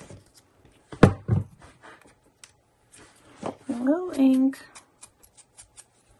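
Two dull knocks on a wooden tabletop about a second in, then a short wordless hum, with light clicks of small buttons and paper being handled.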